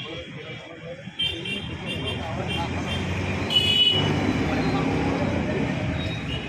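Street traffic noise and background voices, growing louder about a second in. There are short high-pitched toots, the clearest about three and a half seconds in.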